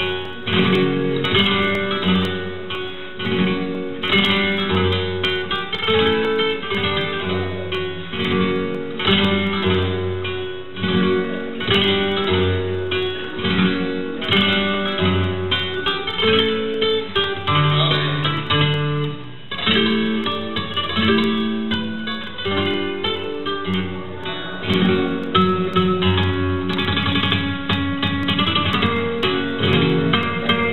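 Solo flamenco guitar played throughout, a steady stream of quick plucked notes and chords with no voice over it.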